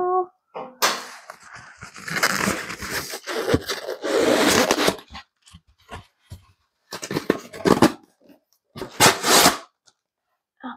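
Styrofoam thermal shipping box being opened: the foam lid scrapes and squeaks against the box for a few seconds as it is worked free, followed by a few shorter scrapes and rustles as the lid is lifted away.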